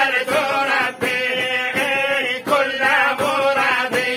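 A group of men chanting an Islamic devotional song together in long, sustained phrases.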